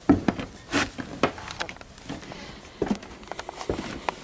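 Handling noise from a handheld camera being carried along, with footsteps on a dusty concrete floor: irregular knocks, clicks and rubbing, the loudest just at the start.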